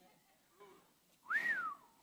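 A person whistling one short note that rises and then falls, about a second and a half in.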